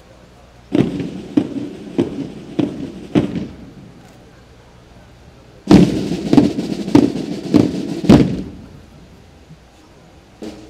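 Two series of five loud, evenly spaced bangs, each about 0.6 s apart. The first series starts about a second in and the second starts a little before the six-second mark.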